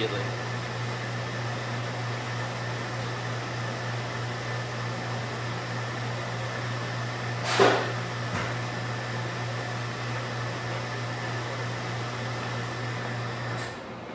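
Steady low machine hum with a faint higher whine, broken by one brief sharp noise a little past halfway; the hum cuts off suddenly just before the end.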